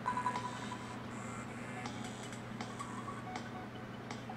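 Faint soundtrack of an animated episode playing quietly in the background: a low steady hum with a brief faint tone near the start and a few soft clicks.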